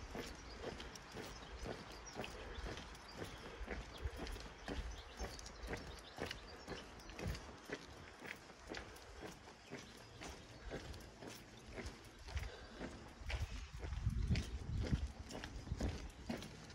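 Walking footsteps on a hard paved lane, a steady run of short taps, with a low rumble swelling near the end.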